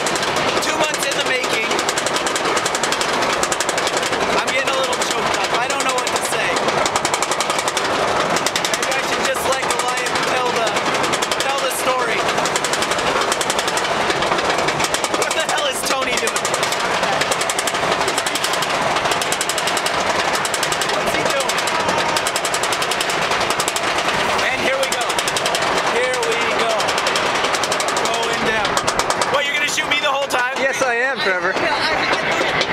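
Rapid, steady mechanical clatter of a steel roller coaster train on its chain lift, its anti-rollback dogs ratcheting as it climbs, with riders' voices over it.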